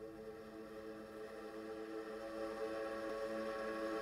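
A sustained instrumental drone of several steady held notes, fading in and slowly growing louder.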